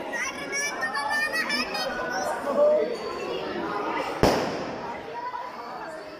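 A group of people chattering and calling out, with one sharp firecracker bang about four seconds in that trails off over about a second.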